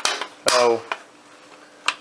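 Three sharp clicks of hard parts knocking together as a hard drive in its mounting bracket is handled inside the opened metal chassis of a Dish 722 satellite receiver: one at the start, one about half a second in, one near the end.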